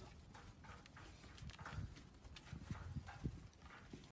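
Faint, irregular scuffing and soft knocks as a strap is worked off a dog's neck and the dog shifts on dirt and gravel.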